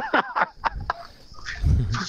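Laughter in quick, high-pitched bursts with falling pitch, dying away about halfway through. A short vocal sound comes near the end.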